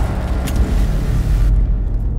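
Horror-trailer sound design: a loud, deep rumble with a sharp hit about half a second in.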